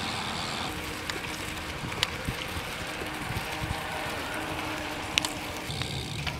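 Steady wind rush on the microphone and tyre noise from a road bike riding along, with a couple of faint sharp clicks.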